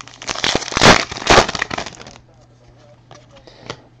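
Foil wrapper of a Panini Prizm football card pack being torn open and crinkled: a burst of crackling for about two seconds, loudest about a second in, followed by a faint click near the end.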